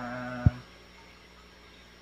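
A drawn-out spoken vowel trails off, then a single sharp low thump about half a second in, followed by quiet room tone.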